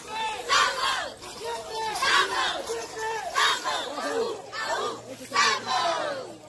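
A group of caporal dancers shouting together in short, loud calls, about two a second.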